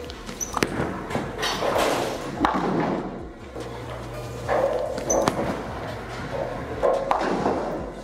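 Bowling ball released onto the lane and rolling, with several sharp knocks of ball and pins clattering, echoing through a large bowling alley.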